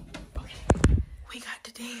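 Whispered speech, broken by two sharp thumps in quick succession a little under a second in.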